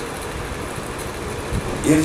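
Steady background hum and hiss with a low rumble during a pause in a man's speech; his voice starts again near the end.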